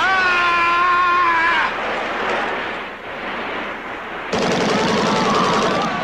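Action-film soundtrack: a man's long scream lasting about a second and a half, then from about four seconds in a dense stretch of automatic gunfire with shouting through it.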